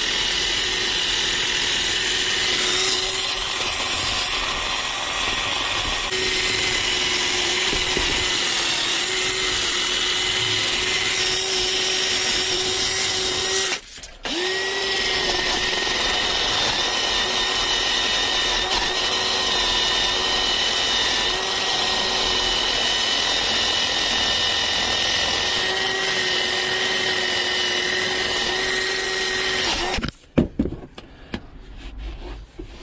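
Cordless drill with a cleaning attachment running steadily against a rusty iron valve handwheel. It stops briefly about halfway through and starts again, then cuts off at the end.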